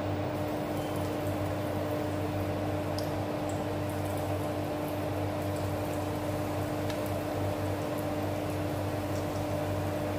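Breaded hot dog rings deep-frying in hot oil in a pan: a steady sizzle with a few faint crackles, over a steady low hum.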